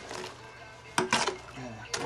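A spade working lumpy clay in a metal wheelbarrow, its blade scraping and knocking against the pan, with one sharp knock about a second in.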